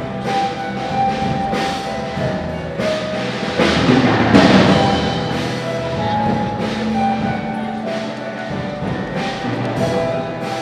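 Ceremonial music: long held melodic notes over regular drum strokes, with a louder stretch of clashing percussion about four to five seconds in.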